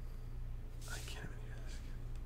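A brief whispered voice about a second in, with a fainter breathy trace near the end, over a low steady hum.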